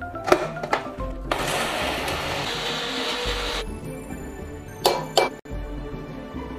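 Small electric spice grinder running for about two seconds, grinding dry whole Sichuan peppercorns (red and green) to powder; it stops suddenly. Two short sharp knocks follow a little later.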